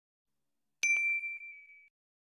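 A notification-bell 'ding' sound effect: one high ding strikes about a second in, with a couple of faint clicks just after, and rings out, fading away within about a second.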